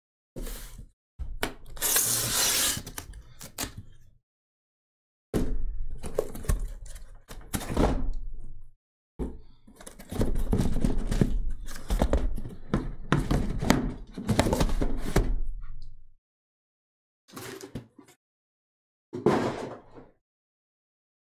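Sealed cardboard shipping case being opened by hand: packing tape cut and torn with a hissing tear about a second in, then cardboard scraping, rustling and thunking in bursts as the case is turned and lifted off the boxes packed inside.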